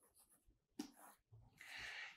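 Faint scratch of a stylus stroking a drawing tablet once about a second in, otherwise near silence, with a soft hiss near the end.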